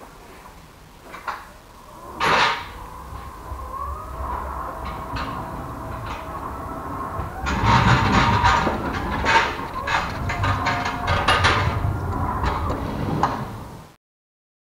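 Linde T16 electric ride-on pallet truck driving along a trailer floor: a steady electric motor whine, joined from about halfway by loud rattling and clattering of the steel forks and chassis, louder as it comes closer. A single sharp clack about two seconds in.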